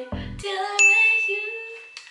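A single bright ding sound effect starts suddenly about a second in and rings out over about a second. It marks a correct answer, as the score goes up by a point. A song plays underneath.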